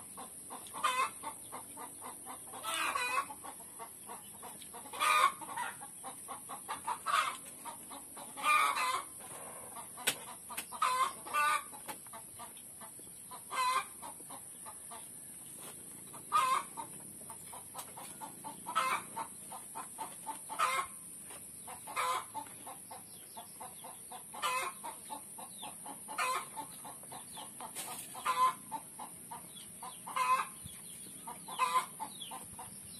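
Chickens clucking: short calls at irregular intervals, one every second or two, over a steady high hiss.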